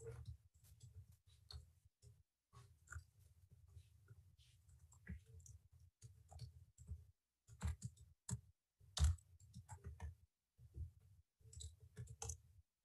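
Computer keyboard keystrokes, faint and irregular, as a command is typed, with one louder keystroke about three-quarters of the way through.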